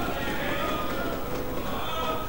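Indistinct voices of members talking over one another in a debating chamber, a low steady murmur with some wavering raised voices.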